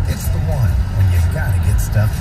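Car radio broadcast playing inside a moving car's cabin: a voice-like programme sound over a steady low rumble of road and engine noise.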